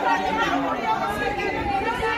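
Crowd of people talking over one another in Italian, several voices at once.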